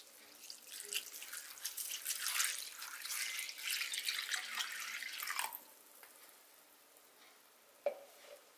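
Water poured from a plastic container onto dried cut seaweed in a bowl, getting louder over the first second or two and stopping abruptly about five and a half seconds in. A brief knock near the end.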